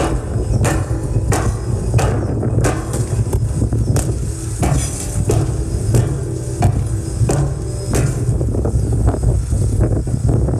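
A sequence of buried explosive charges going off one after another at an even pace, about three every two seconds, over a steady low rumble. These are the blasts of a blast-induced liquefaction test, shaking the sand around a test pile to make it liquefy.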